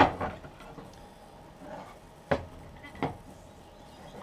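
Wooden workpieces and a sliding bevel being handled on a wooden workbench. There is a sharp knock right at the start, the loudest, then two more knocks about two and three seconds in, with soft handling noise between them.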